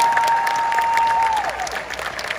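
Audience applauding just after an orchestral song ends, with a long, steady whistle over the clapping that tails off and stops about a second and a half in.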